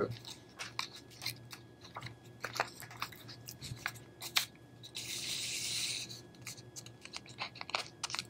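Paper and a clear plastic sleeve handled on a table: faint crinkling and small clicks as an entry form is pushed down inside the sleeve, with a one-second sliding hiss about five seconds in.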